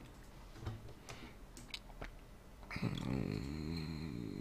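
A few faint mouth clicks, then about two-thirds of the way in a man's low, drawn-out hesitation hum through a closed mouth, its pitch wavering slightly, quieter than his speech.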